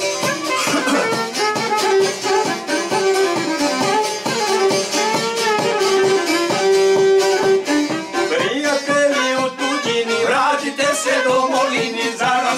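Violin playing a folk melody with long held notes, accompanied by a small plucked string instrument strumming in an even rhythm.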